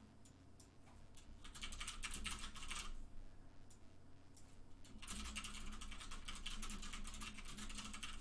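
Typing on a computer keyboard: two runs of rapid key clicks, the first about a second and a half in, lasting just over a second, the second starting about five seconds in.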